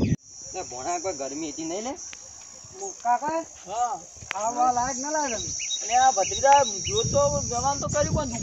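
Insects trilling in a steady, high-pitched drone, broken off briefly about two seconds in, under people's voices.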